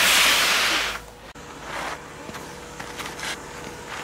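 Skis sliding and scraping across snow in a turn: a loud hiss for about the first second, then a quieter sliding noise.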